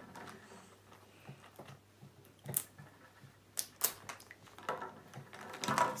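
A few scattered sharp plastic clicks and taps from small plastic toy capsules being handled and pried at while someone tries to open them.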